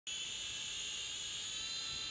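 Micro quadcopter drone's small electric motors and propellers running at a steady high-pitched whine, several fixed tones over a hiss, as it lifts off.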